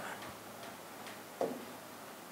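Quiet room tone with a single faint, short tap about one and a half seconds in.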